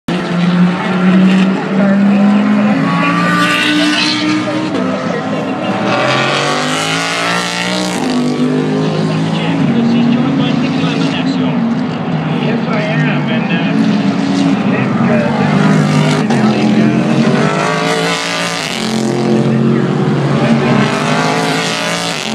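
Race car engines running hard as cars pass one after another on the circuit. The engine pitch steps up and down with gear changes and rises as the cars accelerate by.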